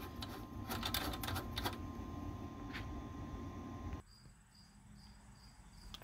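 Low room noise with a steady thin tone and a few faint clicks, while the coax connector is handled at the bench. About four seconds in it drops to near quiet, with a faint high chirp repeating about two and a half times a second.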